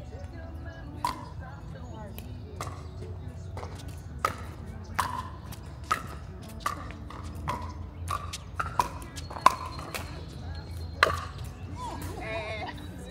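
Pickleball rally: solid paddles striking a hard plastic pickleball, a string of sharp pocks with a brief ring, about a dozen at an uneven pace of one or two a second. The two loudest come near the end.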